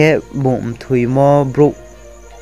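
A man's voice talking in short bursts, with one syllable drawn out, over a faint steady high-pitched whine.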